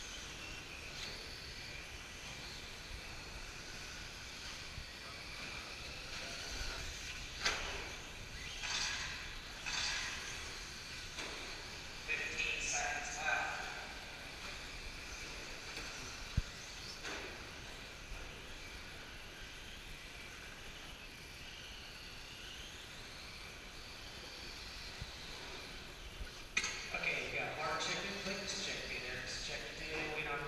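Indoor RC dirt-track ambience: electric 17.5-turn short course trucks running practice laps, with people talking in the hall, clearest near the end.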